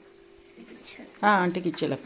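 A woman's voice: after a quiet first second, a short pitched exclamation that rises and falls, lasting about half a second.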